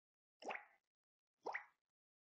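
Near silence broken by two faint, short pops about a second apart.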